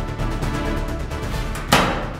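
Background music, then about 1.7 s in a single loud clack as a toy train engine bumps into plastic toy trucks and couples on.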